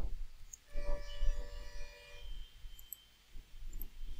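Computer keyboard keystrokes and mouse clicks, a few sharp, separate clicks with the strongest right at the start. About a second in, a faint steady tone holds for about a second and a half.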